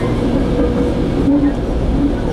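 Steady rumble of a Metrolink commuter train in motion, heard from inside the passenger car.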